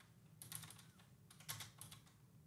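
Faint typing on a computer keyboard: a few short bursts of keystrokes, one about half a second in and another near the end.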